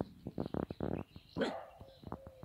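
Two dogs play-fighting: a run of buzzing play growls about half a second in, then a louder single yelp-like bark about one and a half seconds in, with sharp clicks, likely claws on the paving.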